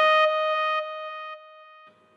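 The last sustained synthesizer note of a podcast intro, a bright held tone with a slight stepped slide in its upper notes, fading away in stages until it is gone near the end.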